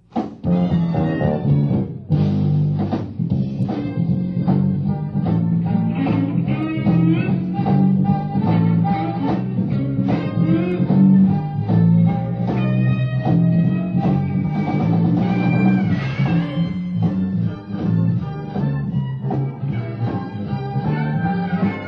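A live jazz-rock band starts a tune abruptly, at full volume: electric bass lines, electric guitar and drum kit, heard on an audience recording.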